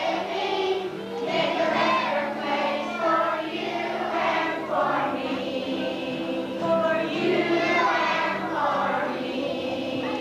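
A group of young children singing together as a choir, with a steady low tone underneath.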